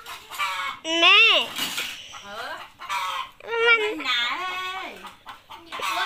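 Chickens calling: hens clucking and a rooster crowing. A loud falling squawk comes about a second in, and a long crow rises, holds and falls away a little past the middle.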